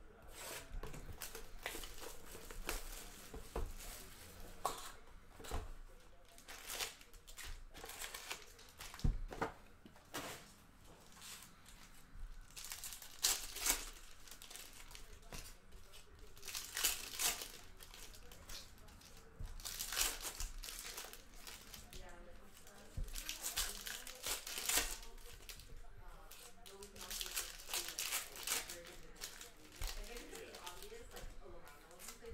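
Foil trading-card packs (Panini Prizm basketball hobby packs) and box wrapping being torn open and crinkled by hand, in repeated irregular bursts of crackling.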